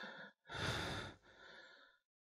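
A man's heavy breaths out: one sigh about half a second in, then a softer one, before the sound cuts off.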